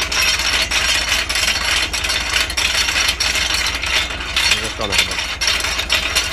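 Tractor-mounted seedbed cultivator with spring tines and a crumbler roller working through heavy clay soil: a loud, dense, steady crackling rattle of soil and metal over the tractor engine's low hum. The roller is the one the driver thinks is set too low, struggling in the clay.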